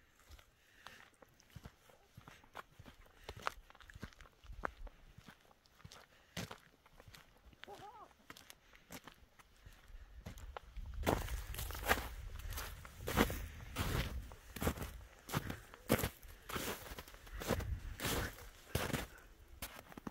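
Footsteps in snow, faint at first, then loud and close from about halfway through, at roughly one and a half steps a second.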